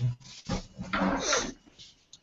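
Short, indistinct vocal sounds from a person: a brief sound at the start, then a longer breathy utterance about a second in that trails off, with no clear words.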